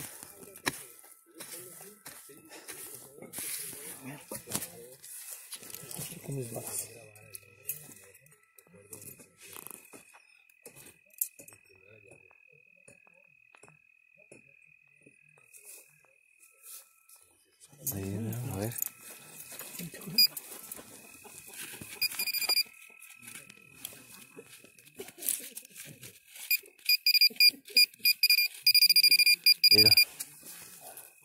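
A handheld metal detector beeping rapidly over and over near the end, held close to the ground at the foot of a tree. In the first few seconds come a few sharp knocks of a hammer striking a tool at the tree's base.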